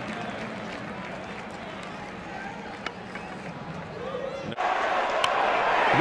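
Ballpark crowd noise as a steady background hum, with one faint click about three seconds in. Near the end it cuts suddenly to louder crowd noise.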